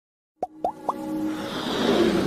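Logo intro sound effects: three quick rising plops about half a second in, then a swelling whoosh with held tones that builds toward the end.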